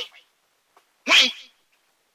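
One short, loud burst of a man's voice, a little after a second in, between quiet pauses.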